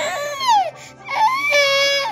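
Ten-month-old baby boy crying in two wails, a fussy cry of boredom. The first wail is short and falls in pitch; the second, starting about a second in, is longer and held steady before it drops.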